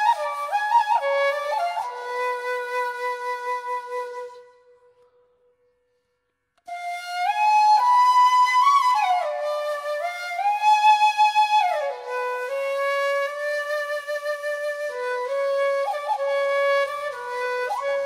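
Background music: a solo flute playing a slow melody, which breaks off about four seconds in and starts again a couple of seconds later.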